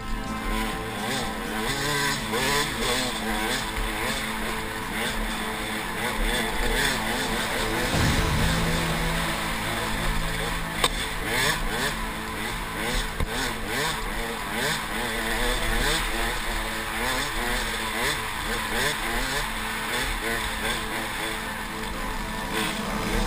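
KTM 200 XC-W two-stroke dirt bike engine revving up and down under the rider's throttle, heard from a helmet-mounted camera with wind rush, and one sharp knock about halfway through.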